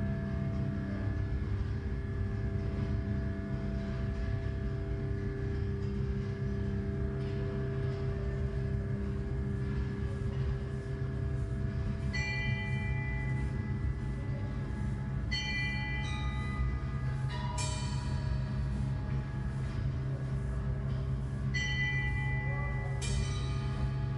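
Live drone music: a steady low drone with held tones, joined from about halfway by bell-like metallic strikes that ring out about five times.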